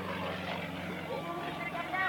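Yakovlev Yak-55's radial engine and propeller giving a steady drone in flight, with people talking close by.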